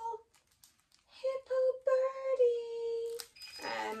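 A woman's voice singing a short phrase of a few notes, ending on one long held note, then speech starting near the end.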